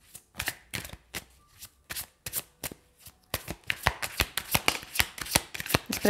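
A deck of tarot cards being shuffled by hand: a run of quick card strokes, a few a second at first, then faster and denser from about halfway through.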